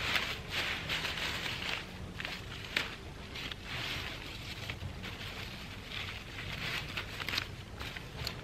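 Bean vines and leaves rustling and crackling in irregular bursts as mature bean pods are pulled and snapped off by hand, with one sharper snap just under three seconds in.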